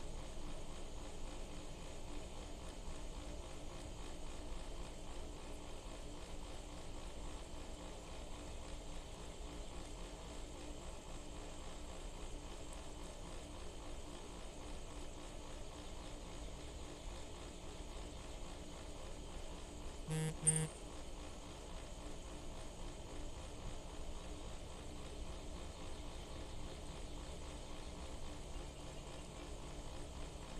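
Steady outdoor background noise with a faint, even hum. About twenty seconds in, a short double tone sounds twice in quick succession.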